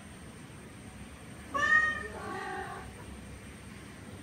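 A domestic cat gives one drawn-out meowing cry, about a second and a half long, that starts high and loud and then drops lower, during a tense standoff between a courting tomcat and a female.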